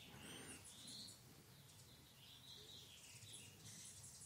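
Near silence, with a few faint, short bird chirps scattered through it.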